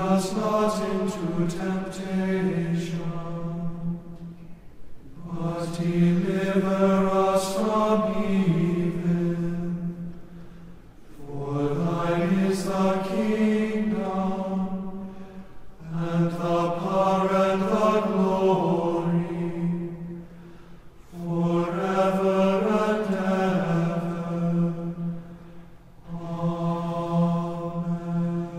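Liturgical chant: a voice intoning prayer text on a nearly level reciting tone. It comes in about six phrases of four to five seconds each, with brief pauses between them.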